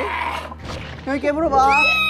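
A young man's high-pitched falsetto squeal, starting near the end, a single long note that slides slowly downward. Before it, a brief burst of noisy commotion and short spoken voices.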